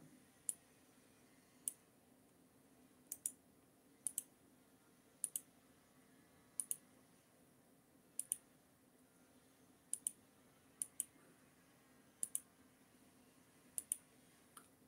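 Faint, sharp computer mouse clicks, mostly in close pairs, coming about every second to second and a half, over a faint steady hum.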